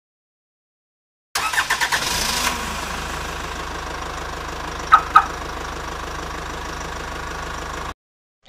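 A car engine cranking over and catching, then running at a steady idle. Two short, sharp sounds come about five seconds in, and the sound cuts off abruptly near the end.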